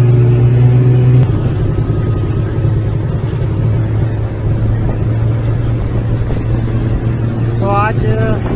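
Snowmobile engine running with a steady low drone; its tone changes and turns rougher about a second in.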